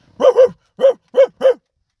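A man imitating a dog barking: five short barks in quick succession, the first two almost run together.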